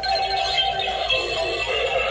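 Slim Sidestepper animatronic clown playing its built-in music after its try-me button is pressed. It plays its sound, but its sidestepping motion does not work.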